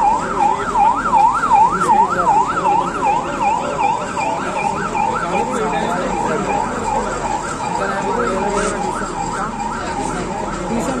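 Emergency vehicle siren on a fast up-and-down wail, about three rises a second. It is loudest at first and weakens after about five seconds, with voices underneath.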